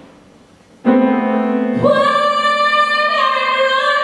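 Sustained sung vocal tones that start suddenly about a second in, a second, higher voice swooping up to join about a second later. Both hold long notes that shift pitch in steps, without words.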